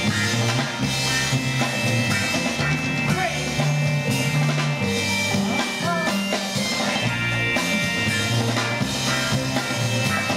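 A live band playing rock music without a break: drum kit, a strong repeating bass line and guitar.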